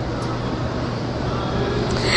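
Steady background noise: an even hiss with a faint low hum underneath and no distinct events.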